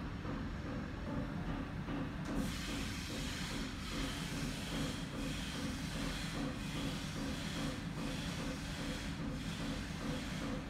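A steady hissing noise that grows brighter and louder about two seconds in, then swells and dips slightly every second or so over a constant low rumble.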